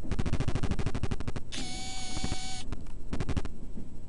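A passenger train running: a fast, even clatter from the carriage and track for the first couple of seconds, then a steady, high train horn blast about a second long, followed by a short burst of clatter.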